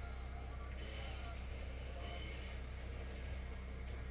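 A steady low hum throughout, with faint voices in the background.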